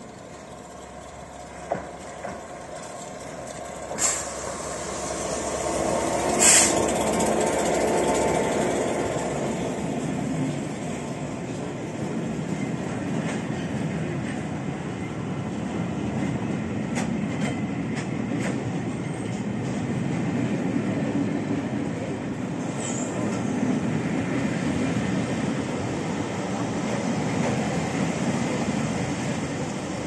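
A Class 67 diesel locomotive passing slowly with a train of Pullman coaches. The rumble builds and is loudest from about six to ten seconds in, with a short sharp burst near its peak. Then the coaches roll by with a steady rumble of wheels and a few clicks over rail joints.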